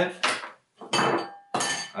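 A hard plastic garlic grater being put down among crockery on a cutting board: two short clattering clinks with a faint ring, about a second in and again just before the end.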